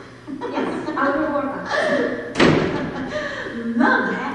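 Actors' stage dialogue, distant and indistinct, broken by one loud thud about two and a half seconds in.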